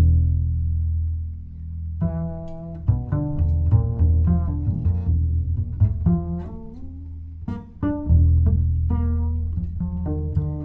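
Double bass played pizzicato: a low note rings for about two seconds, then a run of plucked notes follows, some higher up the instrument.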